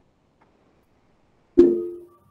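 Near silence, then about one and a half seconds in a single short musical tone, struck suddenly and quickly fading.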